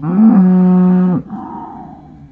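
A cow mooing once: a long, low call held steady, breaking off after about a second into a fainter, rougher tail.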